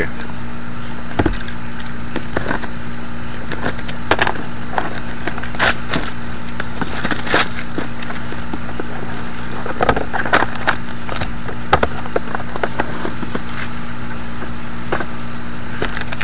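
Cardboard box of 2013-14 Panini Prime hockey cards being opened by hand: scattered clicks, scrapes and a few short tearing and crinkling sounds as the box is worked open and the packaging handled, over a steady low hum.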